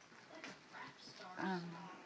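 A pet dog whining, with one short held whine about one and a half seconds in.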